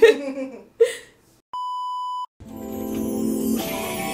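A single steady electronic beep lasting under a second, then background music with acoustic guitar that rises in from a little past halfway.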